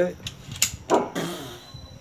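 Men talking briefly, with a few sharp clicks, the loudest a little over half a second in.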